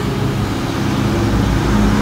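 Steady low mechanical rumble with a hum, with no clear start or stop.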